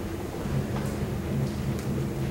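Drum kit played freely: a steady low rumble of rolls on the toms, with a few light high strikes over it.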